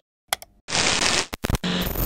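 Animated logo sound effects: a couple of quick clicks, a bright whoosh lasting about half a second, a few more clicks, then a short buzzy tone near the end.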